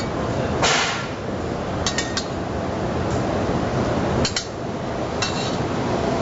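Light metallic clinks of utensils against cookware, a few separate strikes, some briefly ringing, over a steady background hum of kitchen noise.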